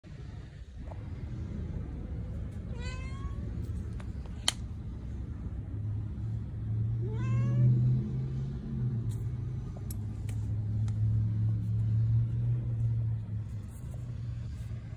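A domestic cat gives two short meows, about three and seven seconds in, while it stalks a praying mantis. A steady low hum runs underneath, and there is one sharp click in between.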